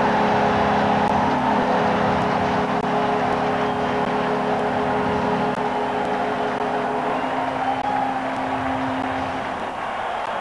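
Hockey arena goal horn sounding a steady chord over a cheering, applauding crowd, marking a home-team goal. It is the old Chicago Stadium horn now hung from the United Center ceiling. Part of the chord stops about halfway and the last tone fades near the end, leaving the crowd noise.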